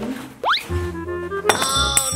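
Children's background music with edited sound effects: a quick upward swoop about half a second in, then a bright chime struck at about a second and a half that rings on, shimmering. The effects go with the pizza box vanishing and reappearing elsewhere, as in a magic trick.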